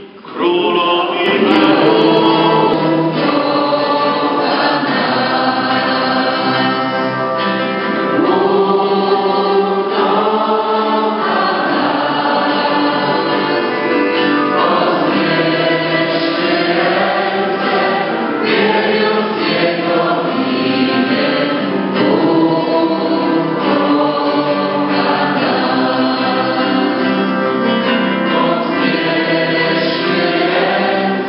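A congregation of many voices singing a worship song together, continuously, after a brief drop at the very start.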